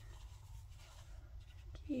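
Faint rustling and scratching of a metal crochet hook working single crochet stitches through soft, plush blanket yarn, over a low steady hum.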